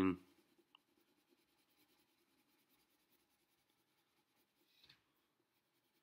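Faint scratching of a colored pencil on paper, shading in small circles.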